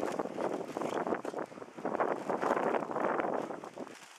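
Gusty wind buffeting the camera microphone, mixed with footsteps of someone walking. The noise rises and falls unevenly and drops away suddenly at the very end.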